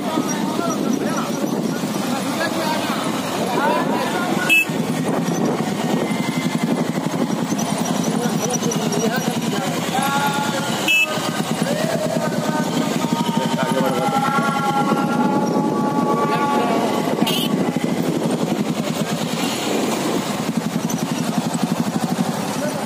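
Several motorcycles running at low speed together on a rough dirt track, a steady engine drone with voices calling over it. Two brief sharp knocks stand out, about four and eleven seconds in.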